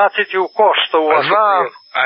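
Speech only: a man talking in Serbian, with a brief pause near the end.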